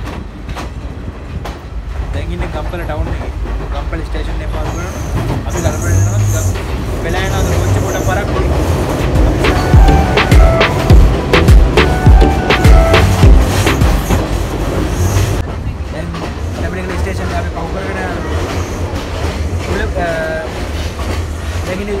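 Moving passenger train heard at an open carriage door and window: a steady rumble with the clickety-clack of wheels over rail joints, loudest about halfway through.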